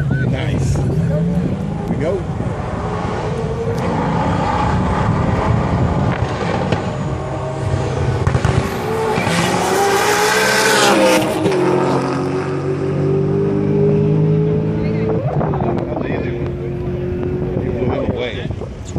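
Two race cars running side by side at full throttle down a drag strip, their engine note rising and growing louder until they pass about ten seconds in, then dropping in pitch as they pull away.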